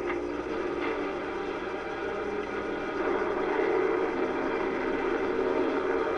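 Steady drone of a four-engine piston bomber's engines from a TV soundtrack, growing a little louder about halfway through, heard through a television speaker and picked up by a webcam microphone.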